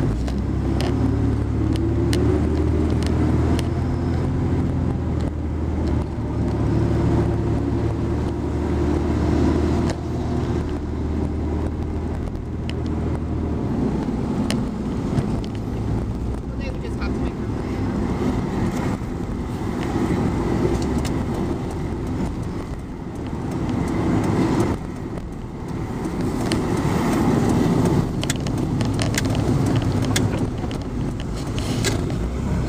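Car interior noise while driving: a steady engine drone with tyre and road noise. For the first dozen seconds or so a steady low engine hum stands out, then it gives way to a more even road rumble.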